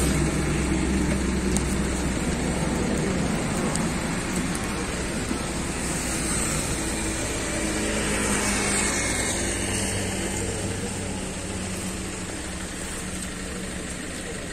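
A road vehicle's engine running steadily at low revs with traffic noise, slowly fading over several seconds.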